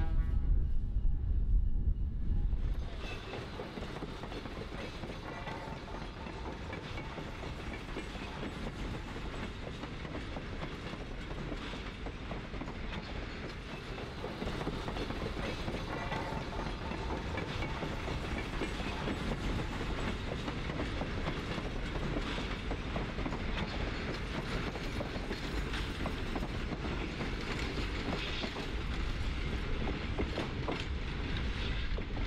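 Alco diesel locomotive train on the rails: a loud rumble for the first few seconds, then, after a sudden drop, a steady rumble with a scatter of wheel clicks that slowly grows louder as a train approaches.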